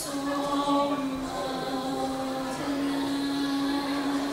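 Female vocal quartet singing together, holding long sustained notes that change pitch a few times.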